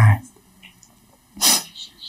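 A single short, sharp, explosive burst of breath from a person, about one and a half seconds in, with a fainter puff of breath just after it.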